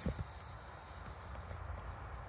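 Faint footsteps on rough grass, a few soft thuds, over a low steady rumble.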